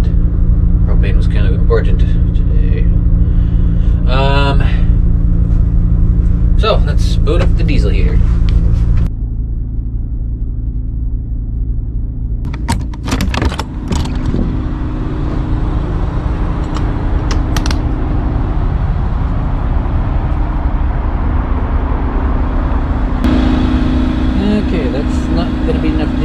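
Steady low hum of an RV propane furnace blower running but blowing cold air, which cuts off abruptly about nine seconds in. A few sharp clicks and knocks follow, then a steady low rumble.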